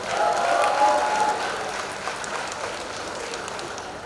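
Audience applauding, loudest at the start and dying away over the next few seconds.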